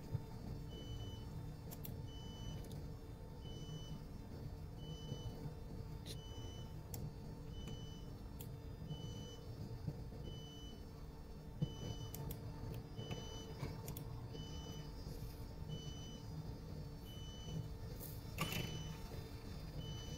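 Faint steady shipboard machinery hum, a low rumble with several steady tones, with a short high electronic beep repeating about every one and a half seconds and a few faint clicks.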